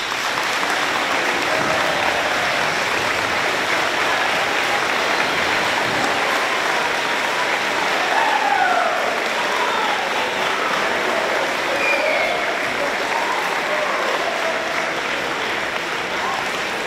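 Audience applauding: a steady round of clapping.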